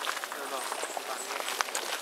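Footsteps rustling through long grass, a quick run of short crunches and swishes, with faint voices in the background.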